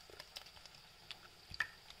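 Faint wet squishes and drips as a raw egg is broken by hand and slides into a glass bowl, with a few light clicks.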